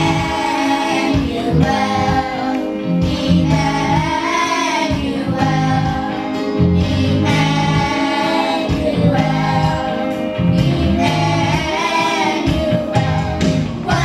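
Children's choir singing together, over an instrumental accompaniment of steady low notes.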